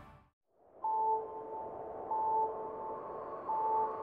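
Electronic logo sting: three identical pings of the same pitch, about 1.3 s apart, over a soft sustained tone, after a brief silence.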